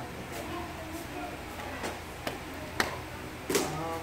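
Quiet room tone with a steady low hum, faint voices in the background, and a few light taps or clicks. A short, sharper sound comes about three and a half seconds in.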